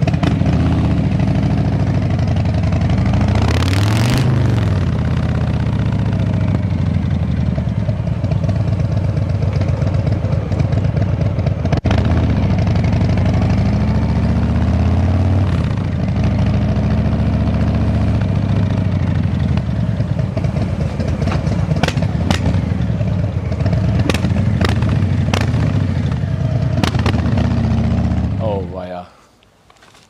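Harley-Davidson Softail Standard's Milwaukee-Eight 107 V-twin, breathing through a Jekill & Hyde exhaust with short headers and short end mufflers, being ridden along a street. The engine note rises and falls with the throttle, and the sound cuts off about a second before the end.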